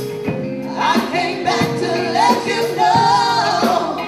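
Live band music with several voices singing together over a steady drum beat and keyboard.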